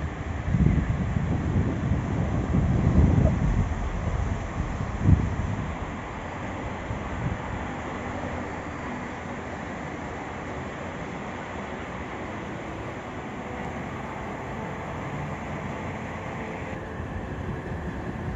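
Wind buffeting a phone microphone in irregular low rumbling gusts, strongest in the first few seconds, then settling into a steady rushing background noise.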